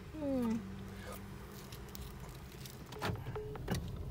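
A person's short falling vocal sound at the start, then the low steady hum of a car's idling engine heard from inside the cabin, with two sharp plastic clicks near the end as a domed plastic sundae cup is handled.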